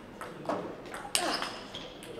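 Table tennis ball in a fast rally, clicking off the bats and the table: about four sharp ticks, the loudest a little past halfway.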